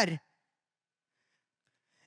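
A man's amplified voice finishes a sentence just after the start, followed by near silence: a pause in speech.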